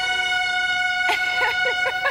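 Game-show sound effect: one steady, held tone, the cue that a panelist has said one of the hidden words. From about a second in, laughter sounds over it.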